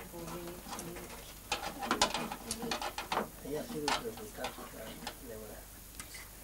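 Several sharp metal clicks and clinks of a hand tool working at the firebox of a small wood-burning stove, with low voices murmuring beneath.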